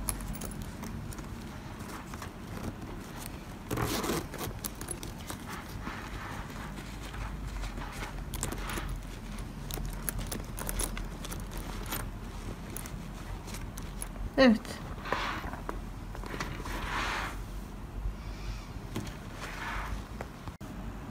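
Handling noise from a crocheted cord handbag being turned and shifted by hand: soft rustling with scattered light clicks from its metal zipper and chain hardware, and a louder rustle about four seconds in.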